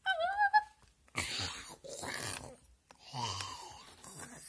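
A person voicing zombies: a short high-pitched cry, then three breathy, rasping groans.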